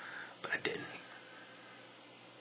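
A man's faint breath and two short whispered sounds about half a second in, then near silence with room tone.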